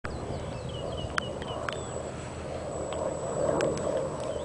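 Bird chirps in the first second and a half, with a few sharp knocks scattered through, the loudest about a second in, over a steady low outdoor background noise.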